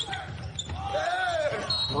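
Basketball game sounds from the court in a near-empty arena: the ball bouncing, with a high curving shout or sneaker squeak about a second in.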